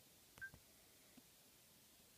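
A single short high electronic blip with a soft click about half a second in, then near silence: the handheld's beep as the animation is stepped to the next frame.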